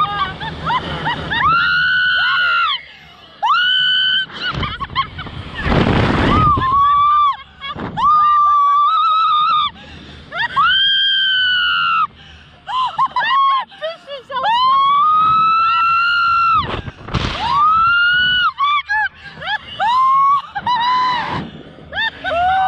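Two women screaming on a slingshot reverse-bungee ride: a run of long, high-pitched screams, one after another, each rising and then falling away, mixed with shrieks of laughter. Twice a short rush of noise cuts across them.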